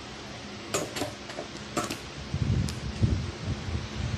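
Handling noise: a few light clicks and knocks, then low rubbing rumbles in the second half, over a steady background hum.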